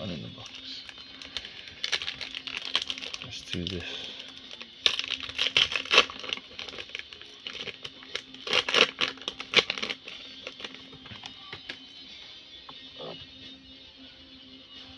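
Foil wrapper of a Pokémon booster pack crinkling as it is opened by hand. The crinkling comes in two loud bursts, about five and nine seconds in.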